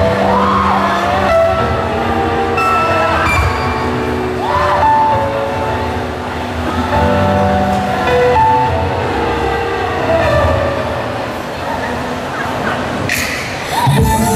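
Slow music intro over loudspeakers: held chords that change every second or two, with a voice sliding in pitch over them. A sharp hit comes near the end, just before the full track kicks in.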